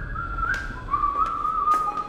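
A person whistling a slow tune: one clear pitch that wavers and steps between a few notes, over a low hum, with a couple of faint clicks.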